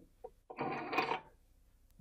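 CNC-machined aluminium toolhead sliding out of a Dillon 550B press frame's slot: a faint tick, then a short metal-on-metal scrape lasting under a second.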